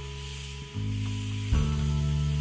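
Food sizzling in a skillet on a grill over an open campfire, a steady hiss. Background music with sustained low notes runs underneath and changes chord twice.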